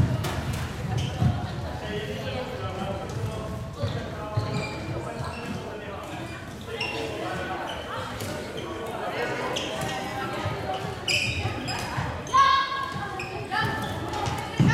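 Floorball play in a sports hall: footsteps and thuds on the court floor, clacks of sticks, and players calling out to each other, with a couple of louder shouts near the end.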